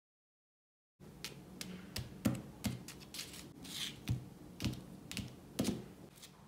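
Plastic toy horse hooves tapping on a wooden surface as the figure is walked along by hand: dead silence for the first second, then irregular sharp clicks about two a second, with a short rustle midway.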